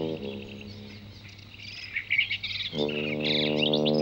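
Small birds chirping and tweeting in quick, overlapping calls. A steady held note of background music fades out just after the start and comes back in about two and a half seconds in.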